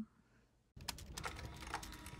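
Rapid clicking of computer-keyboard typing, as a sound effect for text being typed into a search bar. It starts suddenly under a second in, after a short silence.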